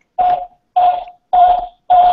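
Audio feedback loop on a video call, caused by a phone picking up the computer's sound and sending it back through the call. It comes as short repeating bursts about two a second, each with a steady ringing tone, getting a little louder.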